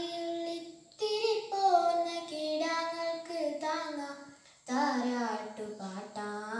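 A girl singing a Malayalam song solo and unaccompanied, in long held phrases. She breaks for breath about a second in and again about four and a half seconds in.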